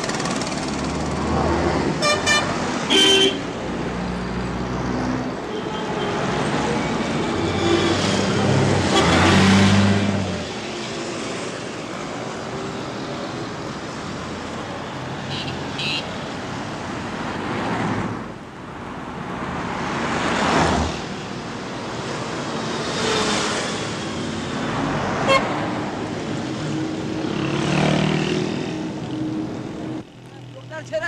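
Busy city street traffic: engines of passing vehicles with car horns tooting, a couple of short toots in the first few seconds. Several louder vehicles swell and fade as they pass.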